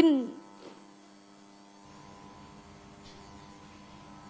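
A female Qur'an reciter's long held note ends with a short falling glide right at the start. Then only a faint steady electrical hum remains, with a low rumble joining about halfway through.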